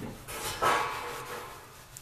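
Cloth rag rubbing along a 4-inch PVC pipe, wiping the drum clean around freshly set rivets: one continuous scrubbing rub lasting about a second and a half.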